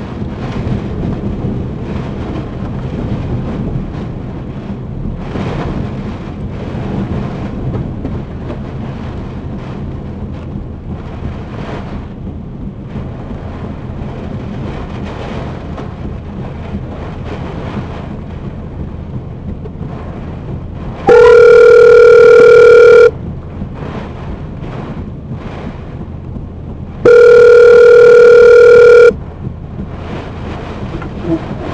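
Wind and rain batter the car throughout. Near the end a phone's ringback tone sounds twice, each ring steady and about two seconds long with about four seconds between them, very loud and distorted through a speaker: an outgoing call ringing before it is answered.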